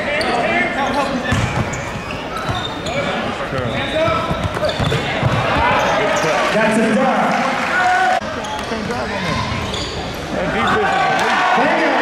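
Live basketball game audio in a large gym: a ball bouncing on the hardwood and short sneaker squeaks over steady crowd chatter, which grows louder near the end.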